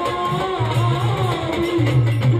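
Live Marathi devotional bhajan (panchapadi) music: a man sings a wavering melody into a microphone over a steady low drum beat, with accompanying instruments.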